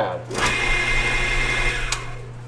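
Power tool running: a drill press spinning a block of wood mounted on threaded rod, a steady whine over a rushing noise that starts about a third of a second in and stops suddenly near the end.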